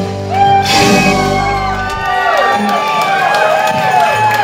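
A live band's final chord ringing out and dying away after about two seconds, while the audience cheers and whoops as the song ends.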